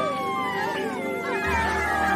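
Festive background music under a group's excited cheering, with high-pitched voices gliding down in pitch; a low bass note comes in near the end.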